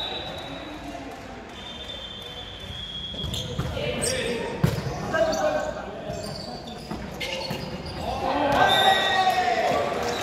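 Volleyball rally in a gym with a hardwood floor: sharp slaps of the ball being hit, the loudest about halfway through, and players' shoes squeaking on the floor, all echoing in the large hall. Players shout during the rally, louder near the end as the point finishes.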